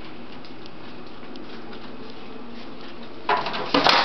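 Steady room noise, then about three seconds in a short burst of rustling, clattering handling noise that ends in a sharp click.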